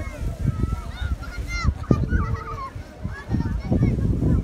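Wind buffeting the microphone with an uneven low rumble. Over it, a run of short, high calls that slide up and down in pitch fill the first three seconds.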